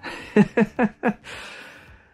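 A man chuckling: four quick bursts of laughter in the first second, followed by a long breathy exhale.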